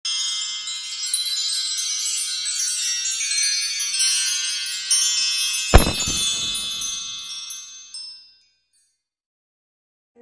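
Intro sound effect of chimes: a dense, high, tinkling shimmer of many ringing tones, with one sharp low hit just before the six-second mark, fading out by about eight seconds.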